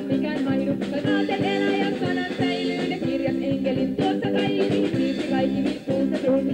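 Live rock band playing an upbeat song with a steady drum beat and electric guitar, with some singing.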